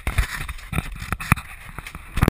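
Handling noise from fingers on a small camera: a run of irregular knocks and scrapes, the sharpest a little over a second in.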